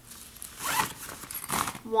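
Zipper of a small fabric filter storage bag being pulled, in two short quick runs about a second apart.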